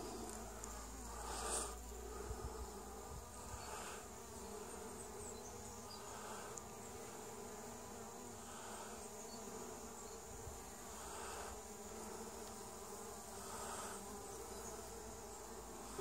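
Honeybees flying around a hive, a faint steady buzz with soft swells every couple of seconds as single bees pass close.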